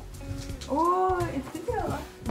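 A person's drawn-out wordless voiced exclamation, its pitch rising then falling, about a second in, followed near the end by a brief rising vocal sound.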